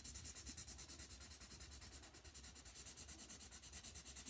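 Felt-tip marker scribbling fast back and forth on paper to colour in an area, faint, at about ten strokes a second.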